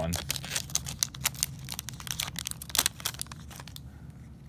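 Crackling and crinkling of a trading-card pack's wrapper, a rapid run of small sharp crackles as the pack is handled and torn open, thinning out near the end.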